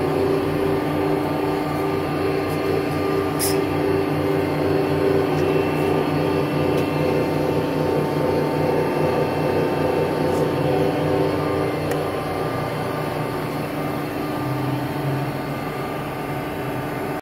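Accurshear 61356 hydraulic power shear idling, its 10 horsepower electric motor and hydraulic pump running with a steady hum of several held tones.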